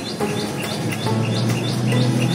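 A bird chirping over and over in the background, short high chirps at an even pace of about three a second.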